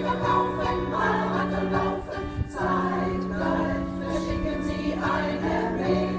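Women's choir singing in German, accompanied by an electric keyboard.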